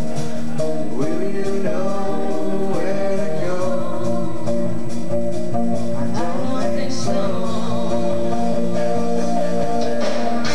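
Live band music: a woman singing lead over electric guitar and a drum kit keeping a steady beat, an upbeat dance number.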